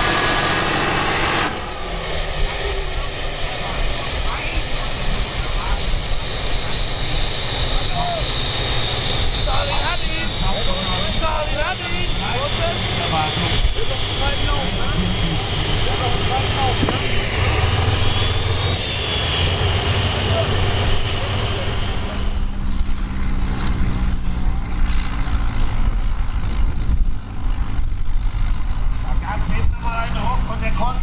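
Diesel engine of a pulling tractor, with a high turbocharger whine. About a second and a half in, the engine comes off the throttle, and the whine falls steadily over several seconds as the turbo spools down. The engine runs on underneath, with voices over it, and from about two-thirds through a different tractor engine runs at a lower, steadier level.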